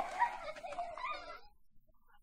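Domestic hen clucking in short, wavering calls that die away about one and a half seconds in.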